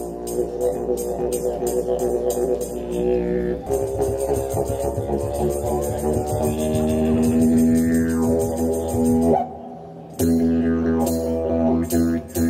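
Didgeridoo played through a microphone: a steady drone with a fast rhythmic pulse, its tone shifting as it is played. It breaks off briefly near the ten-second mark, then starts again.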